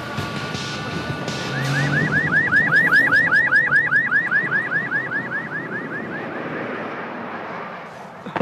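Police vehicle siren in a fast yelp, its pitch sweeping up and down about five times a second, swelling to its loudest about three seconds in and then fading away, over the running engine of the arriving police jeep.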